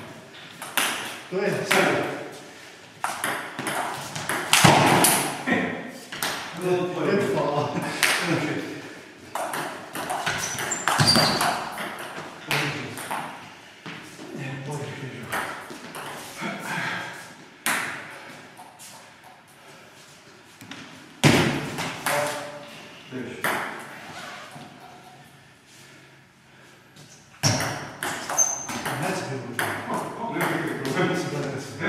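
Table tennis play: the ball clicking sharply off bats and table in quick, irregular strikes, with voices between the rallies; it goes quieter for several seconds in the second half.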